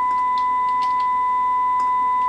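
A steady 1 kHz test tone from a portable AM radio's speaker, received from a low-power AM transmitter modulated at a moderate level, so the tone sounds fairly clean. A few faint clicks of keys being pressed on the test set sound over it.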